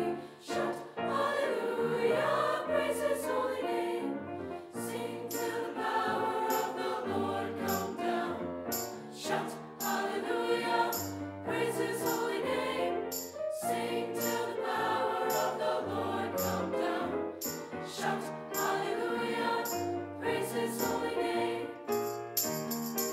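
Mixed choir of young men and women singing in parts, holding sustained chords that move from note to note.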